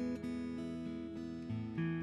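Instrumental acoustic guitar music, strummed chords changing every half second or so.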